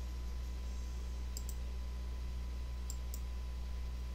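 Two quick double clicks of a computer mouse, about a second and a half apart, over a steady low electrical hum.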